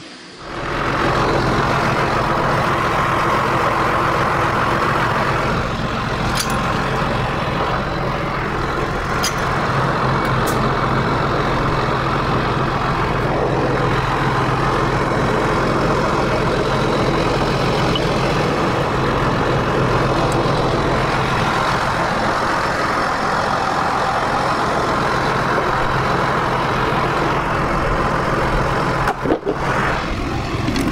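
John Deere 7810 tractor's diesel engine running steadily, with a few faint sharp clicks between about six and ten seconds in.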